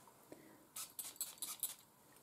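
Faint handling sounds of a glass perfume bottle in the hand: a soft tick, then a few brief light clicks and rustles about a second in.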